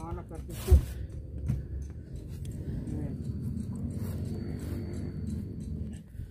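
A single sharp knock a little under a second in, then a low steady rumble with faint voices underneath.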